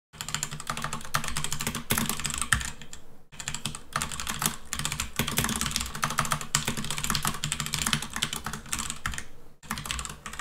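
Fast typing on a computer keyboard: a dense, unbroken run of keystrokes, with a short break about a third of the way in and another near the end.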